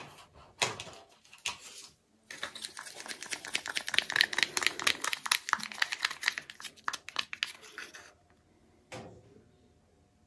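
A stir stick rattling and scraping in a small plastic tub of black cell activator paint, handled in nitrile gloves: a few single knocks, then a dense run of rapid clicks lasting several seconds, and one more knock near the end.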